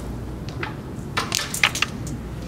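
A carrom shot: the striker is flicked across the board and clacks into the carrom men, with one sharp click about half a second in, then a quick run of sharper, louder clicks as the pieces knock into each other and the board's frame.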